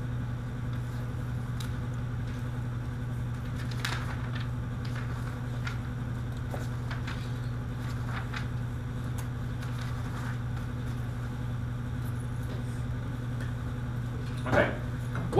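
Steady low room hum with faint, scattered rustles and clicks of paper sheets being handled and shuffled.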